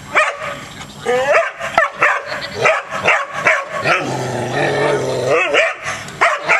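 A dog barking at an opossum in a quick string of sharp barks and yips, about three a second. Around the four-second mark the barks give way to one longer, wavering vocal sound before the short barks start again.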